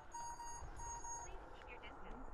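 Short electronic beeps at one steady pitch, repeated several times and stopping a little past halfway, as the Agras T20 spray drone's automatic takeoff is started.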